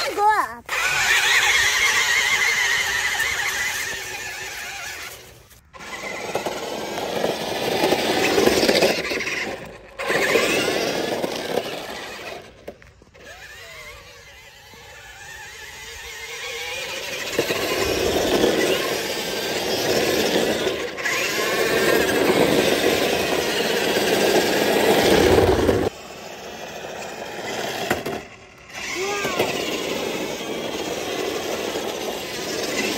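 Small electric drive motors and plastic gearbox of a toy 1/10-scale RC truck whining as it drives over snow, grass and wet pavement. The whine swells and fades as it speeds up and turns, and breaks off abruptly several times.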